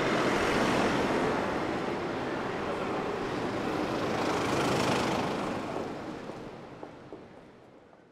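Street traffic noise with a car driving past, loudest about five seconds in, then the whole sound fades away near the end.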